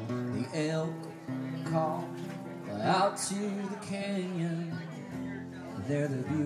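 Solo acoustic guitar strummed in steady chords, with a man's voice singing long sliding notes over it.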